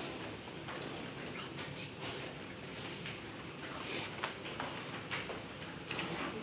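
Dry-erase markers squeaking and scratching on small handheld whiteboards, with scattered faint clicks and rustles from several students writing at once.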